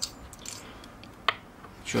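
Small plastic and metal parts of a valve-cap LED bicycle wheel light being handled while it is taken apart, with faint clicks and one sharp click a little past halfway.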